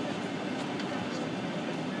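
Steady hum of a Boeing 767 cabin's air-conditioning during boarding, with the low chatter of passengers in the aisle.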